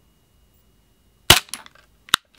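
Western Arms SW1911 gas blowback airsoft pistol firing a single shot through a chronograph: one sharp crack a little over a second in, followed by a short, fainter click.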